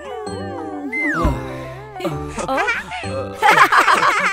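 Cartoon family of children and their father giggling and laughing together over light background music. The laughter swells into louder group laughter near the end.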